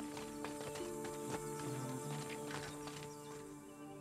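Hooves clip-clopping at a walk, about three or four hoofbeats a second and fading near the end, over background music with long held notes.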